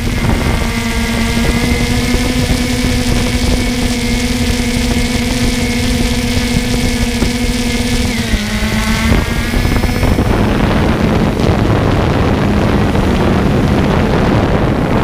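Drone propellers humming steadily over wind noise on the microphone; the pitch dips slightly about eight seconds in and the hum fades out about two seconds later, leaving the wind rumble.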